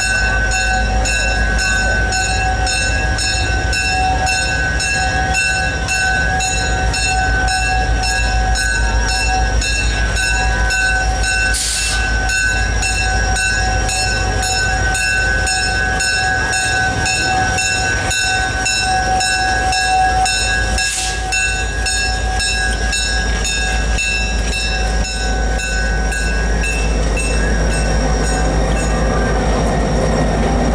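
EMD GP30 diesel locomotive rolling slowly in with its passenger train, its bell ringing steadily over a low engine rumble until the bell stops a few seconds before the end. Two short hisses of air come about a third and two-thirds of the way through.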